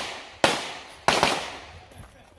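Pistol fired twice, about two-thirds of a second apart, each shot trailing off in a long echo.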